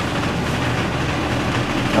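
Steady low mechanical hum with an even rushing-air noise, from the building's ventilation system.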